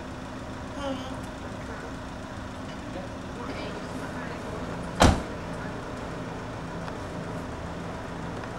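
A single sharp knock about five seconds in, as a small child climbs down off a compact tractor and bumps its body, over a steady low hum.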